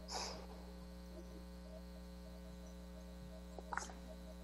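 Steady electrical mains hum on a video-call audio feed. There is a brief hiss-like burst at the start and a few soft clicks near the end.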